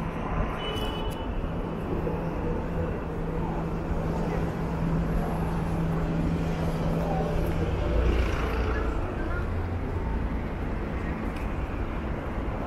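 City road traffic: a steady hum of car engines and tyres passing on the street alongside, swelling as a vehicle goes by about eight seconds in.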